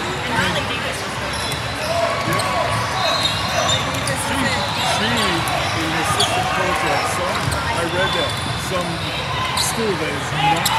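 A basketball bounces on a hardwood gym floor, dribbled again and again as the knocks echo in a large hall.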